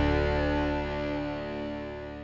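An overdriven electric guitar chord, a Gibson ES-335 through a Sunn Model T amp, left ringing and slowly dying away.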